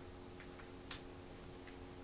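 A few faint light clicks, about four in two seconds and the strongest about a second in, from hands handling a Thunderbolt cable plug at a laptop's side port. A faint steady hum runs underneath.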